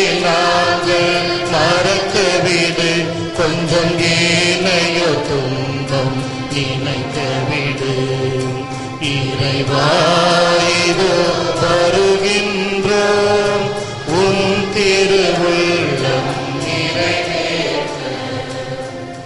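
A hymn being sung during Mass: voices in a slow, chant-like melody with long held notes over a steady low accompaniment, fading somewhat near the end.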